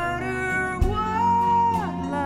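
Live chamber-folk ensemble of viola, cello, acoustic guitar and soft percussion playing a slow ballad: sustained string notes over guitar, with a single soft low drum hit a little under a second in and a high held note that slides downward near the end.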